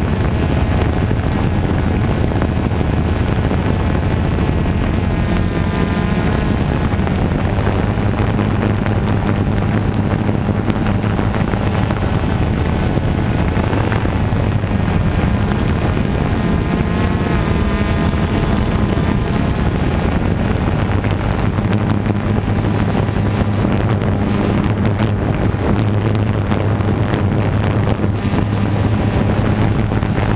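DJI Phantom 2 quadcopter's electric motors and propellers humming steadily, heard from its onboard GoPro, with wind noise on the microphone. The motor pitch wavers a little as the drone climbs and holds position.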